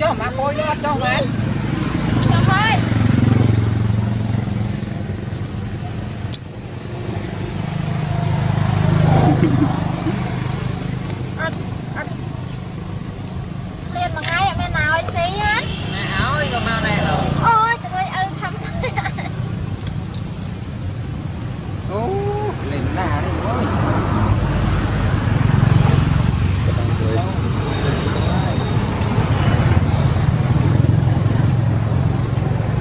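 People talking intermittently in the background over a steady low rumble of passing road traffic, with the voices clearest about halfway through.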